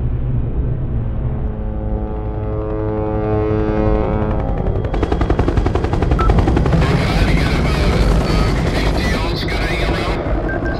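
Film sound mix: a tone swells and rises for the first four or five seconds, then a military helicopter comes in with a fast, dense chopping of its rotors.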